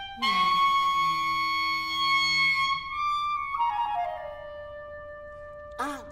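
Clarinet playing with a small chamber ensemble: a loud held chord comes in just after the start, then a line falls in steps to a long held note.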